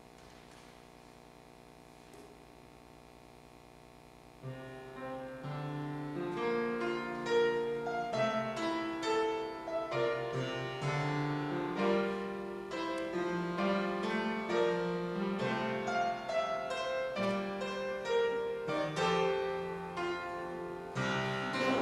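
Faint room tone for about four seconds, then a keyboard begins the instrumental introduction to a choral anthem, playing a flowing line of chords and melody.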